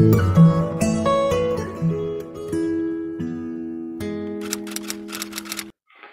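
Short acoustic guitar intro music: plucked notes that thin out and ring into a long held chord, with a quick run of clicks over the last couple of seconds. It cuts off suddenly just before the end.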